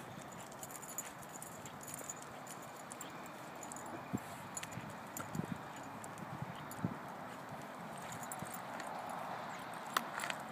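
Footsteps on a concrete sidewalk with scattered light clicks from a puppy's leash and harness, over a steady outdoor background noise.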